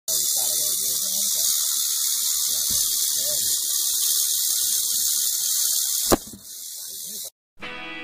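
South American rattlesnake (cascavel) rattling its tail: a steady, high, hissing buzz, the snake's defensive warning. It cuts off about six seconds in.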